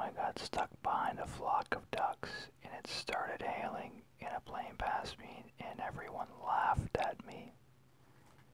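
Whispered speech: a person reading a passage of text aloud in a whisper, which stops shortly before the end.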